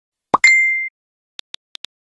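New-message notification sound effect: a short low pop followed at once by a bright ding that rings for about half a second. About a second and a half in, four quick, light clicks follow.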